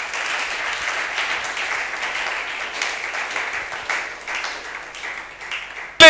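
A congregation applauding, with many hands clapping together. The applause dies down over the last couple of seconds.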